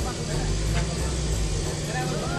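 Motorcycle engine idling with a low, steady rumble, and indistinct voices nearby.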